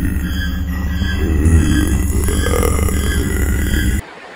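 Edited-in dark background music: a loud, steady low bass drone with a faint high pulse repeating about twice a second. It cuts off abruptly at the end.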